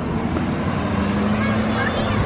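A motor vehicle's engine running on the street: a steady low hum over traffic noise.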